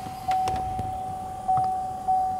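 The truck's electronic warning chime holds one steady pitch, swelling a few times and fading between. The driver's door is open with the ignition on.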